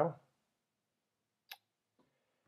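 A single sharp mouse click about one and a half seconds in, against near silence: the click that opens the free-trial signup page.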